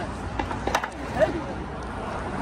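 A few sharp knocks in the first second or so, over steady street traffic noise, with brief faint voices.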